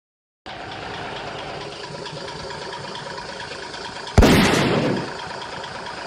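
Steady engine-like rumble around a burning car attended by firefighters. About four seconds in, a sudden loud blast dies away over about a second.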